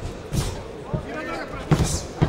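Gloved punches landing in a close-range boxing exchange: about three sharp thuds, the loudest near the end, amid shouting voices.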